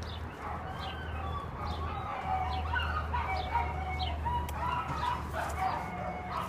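Many short animal calls, overlapping chirps with quick rises and falls in pitch, over a steady low hum that stops near the end.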